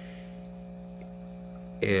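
A steady low hum over faint background noise; a man starts speaking near the end.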